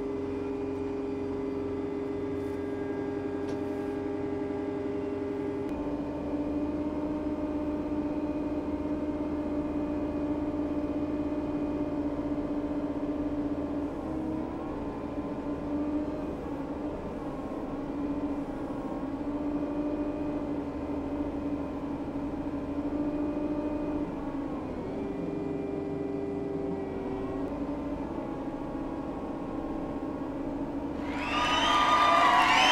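Diesel engines of a Kubota M4D-071 tractor and a John Deere 333G skid steer running under load as the tractor tows the stuck skid steer. The engine note is steady, steps up in pitch about six seconds in, and wavers in the middle and again a few seconds before the end.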